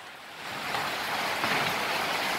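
Heavy rain pouring down in a storm, a steady hiss that swells louder about half a second in and then holds.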